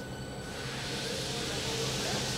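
Centrifugal pump and its electric motor running with a steady low hum and a hiss of liquid through the piping that grows gradually louder as the pump's drive is set back to about 30 hertz.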